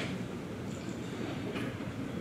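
Room noise of a large hall with a seated audience: a steady low rumble, with a faint click about one and a half seconds in.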